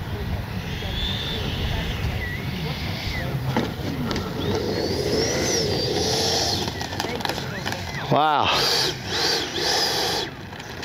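Freewing JAS-39 Gripen's 80 mm 12-blade electric ducted fan whining, its pitch rising and falling with the throttle as the RC jet lands and rolls out on the runway. It is loudest about eight seconds in, as the jet rolls close past.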